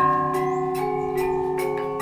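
Selonding, the Balinese gamelan of iron keys, playing: struck iron bars ring at several pitches, a new note every half second or so, each ringing on under the next.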